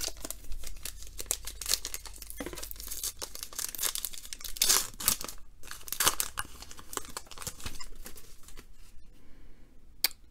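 A baseball-card pack's wrapper being torn open and crinkled by hand: an irregular run of crackles and rips, loudest about halfway through and thinning out near the end.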